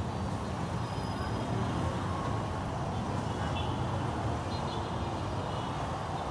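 Steady street traffic noise at a busy city junction: cars, minibuses and motorcycle taxis running, heard as a continuous low rumble without any single standout event.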